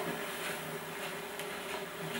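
A steady low hum with a soft click at the very start.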